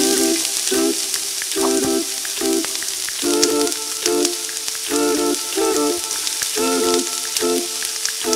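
Marinated pork chops sizzling on a hot grill: a steady hiss with small pops, under hummed a cappella background music.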